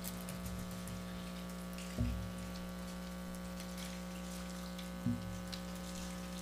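Quiet room tone with a steady electrical hum and faint scattered ticks, broken by two dull low thumps about three seconds apart.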